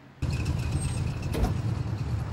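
Vehicle engine running, a steady low rumble that starts abruptly just after the start, with a single knock about one and a half seconds in.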